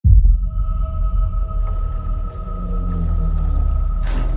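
Film-trailer sound design: a deep, uneven low rumble with a steady high tone held above it, starting abruptly at the opening, in the manner of a submarine's underwater soundscape.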